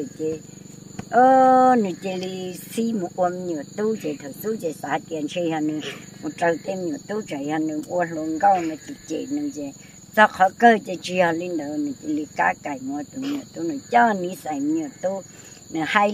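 An elderly woman speaking Hmong without a break, over a steady high-pitched drone of insects.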